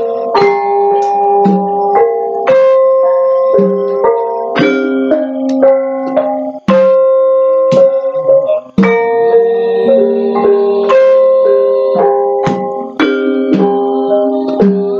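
Javanese gamelan ensemble playing: metallophones and kettle gongs struck in a steady run of notes, each tone ringing on into the next.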